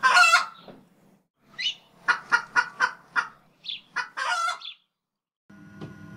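Chicken clucking in a run of short calls, about three a second, ending in a slightly longer call. After a short gap, a faint steady hum starts about five and a half seconds in.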